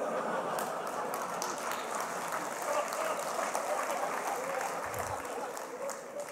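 Large audience laughing and clapping together, a steady wash of laughter and applause that eases off near the end.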